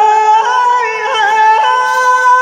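A male singer performs Rajasthani Teja gayan, a devotional folk song to Tejaji, into a microphone. He holds one long, high, drawn-out note whose pitch steps up slightly about half a second in.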